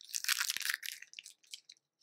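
Catheter packaging crinkling and crackling as it is handled in the hands: a dense run of crackles in the first second, thinning to a few scattered ticks.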